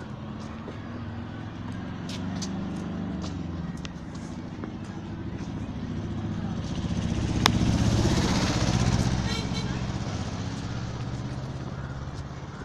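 Street traffic: a steady low engine hum, with a motor vehicle passing close and loudest about eight seconds in.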